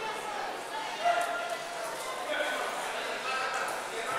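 Indistinct voices of coaches and spectators echoing through a large sports hall, with a brief louder call about a second in.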